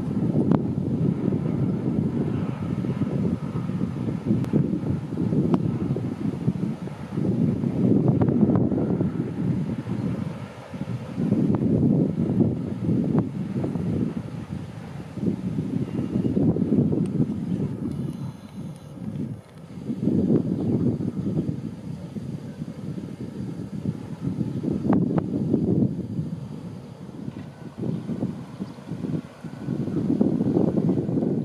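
Wind buffeting the microphone in uneven gusts, over the low running of a MÁV M62 (class 628) locomotive's two-stroke V12 diesel as it slowly approaches hauling tank wagons.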